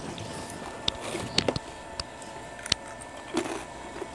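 A person chewing crunchy white sardine chips, making scattered, irregular soft crunches and mouth clicks.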